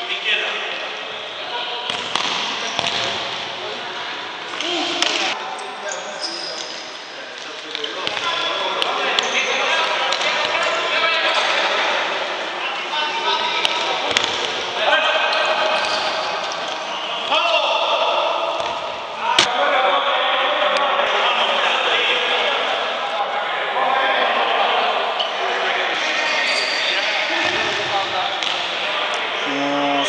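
Indoor futsal game in a sports hall: the ball being kicked and bouncing on the hard floor, with players and onlookers calling out throughout. One sharp, loud knock stands out about two-thirds of the way through.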